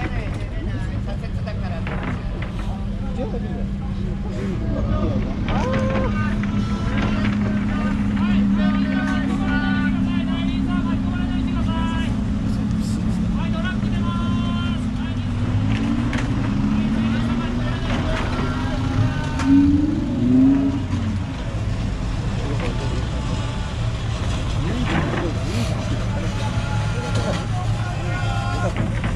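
Car and truck engines running at low speed as vehicles pull away, with an engine revved briefly twice about two-thirds of the way through; people talking in the background.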